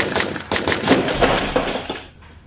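Two handguns firing a rapid volley of shots, several a second, with a brief pause about half a second in. The shooting stops near the end.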